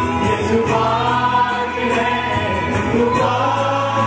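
A Punjabi Christian worship song: a male lead voice singing over a harmonium, with several voices singing along and a steady beat.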